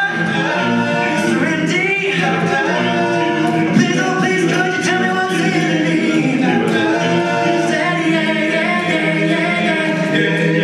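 Male a cappella group of six voices singing a song in close harmony, with no instruments.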